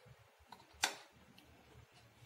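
A sharp click a little under a second in, with a smaller tick just before it: a plastic spoon knocking against a steel pan while thick custard is scraped out of it.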